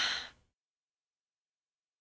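A woman's short breathy sigh, about half a second long, right at the start.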